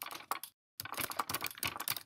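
Rapid typing on a computer keyboard: a run of keystroke clicks, a brief pause about half a second in, then a faster continuous burst of keystrokes.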